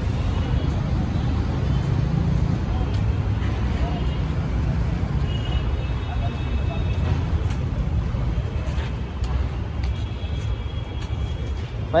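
Outdoor street ambience: a steady low rumble of traffic noise. A faint high tone comes and goes twice.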